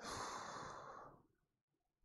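A man's sigh: one soft breath out into a clip-on microphone, lasting about a second.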